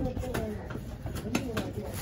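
A heavy fish-cutting knife chopping trevally pieces on a wooden log chopping block: a couple of chops, the sharper one about a second and a half in. Pigeons cooing and voices can be heard behind the chops.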